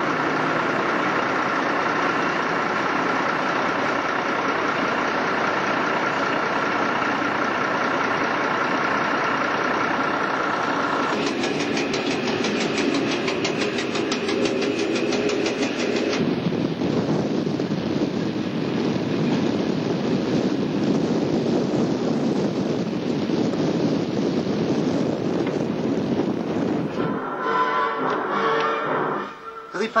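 FS class ALn 668 diesel railcar running under power as it pulls away from the platform, its diesel engines loud and steady. The sound changes character twice partway through, with a stretch of even rapid ticking between the changes.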